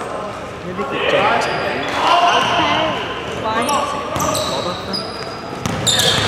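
Live basketball play on a wooden indoor court: a ball bouncing on the floor as it is dribbled, sneakers squeaking in short high chirps from about halfway, and players' voices calling out, all carrying in a large hall.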